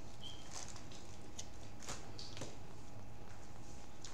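Faint eating noises: a handful of soft, crisp crackles from chewing a crunchy fried-chicken chalupa shell, over a steady low room hum.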